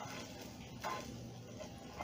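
A few faint light clicks of utensils against cookware as a hot tempering is poured into dal batter.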